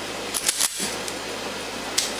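Sharp metallic clicks from a Kel-Tec P3AT .380 pistol being handled, a quick pair about half a second in and another near the end, over a steady low hum.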